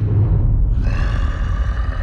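Deep, rumbling monster growl: the Hulk's snarl as a film sound effect, starting suddenly and loudly. A high ringing tone joins a little under a second in.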